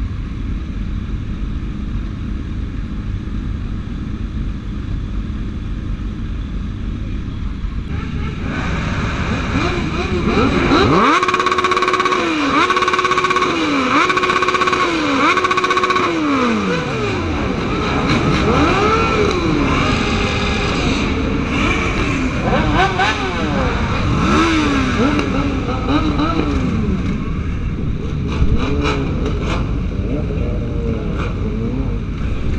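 A group of sport motorcycles idling with a low rumble. About a third of the way in, engines are revved hard: one is held high in four steady pulses with short dips between them, followed by quicker rising-and-falling revs.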